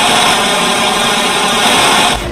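Loud, steady burst of static noise, a plain hiss with no tune or beat, used as a glitch effect in the meme's audio edit.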